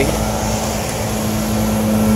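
Rooftop HVAC unit running with a steady hum, a constant low tone under a mechanical rumble. Its condenser fan is not turning, a sign of a bad condenser fan motor that leaves the unit running hot.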